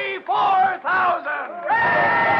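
A crowd of voices shouting in a radio drama: a few separate shouts at first, then many voices join in a loud, continuous cheer a little under two seconds in.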